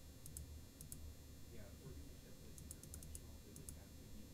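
Near silence over a low steady hum, with faint computer-mouse clicks: a couple near the start and a quick run of them about two and a half to three and a half seconds in.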